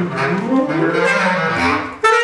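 Tenor saxophone and bass clarinet playing jazz together in a low register. In the first half second a low note slides down and back up, followed by held low notes.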